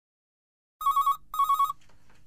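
Phone ringing with an incoming call: two short trilling rings, close together, starting about a second in.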